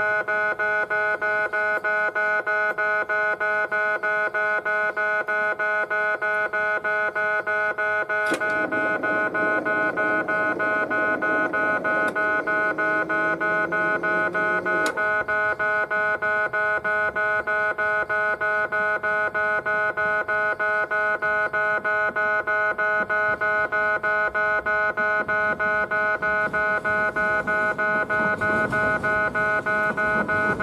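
Railway level crossing warning bell ringing in rapid, even strokes at one fixed pitch throughout. Between about 8 and 15 seconds in, a lower sound with a slowly rising tone joins it, with a few sharp clicks.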